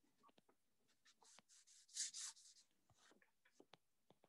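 Faint stylus writing on a tablet screen: a string of light taps and short scratchy strokes, loudest in a quick run of strokes about two seconds in.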